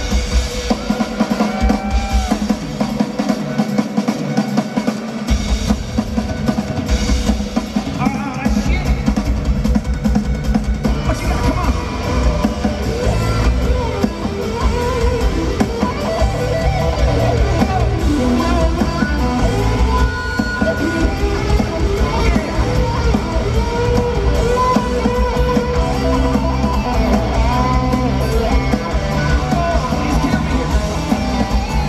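Live rock band playing an instrumental breakdown in an arena: a drum kit keeps a steady beat with electric guitar over it. The low end drops out for a couple of seconds near the start, then comes back in.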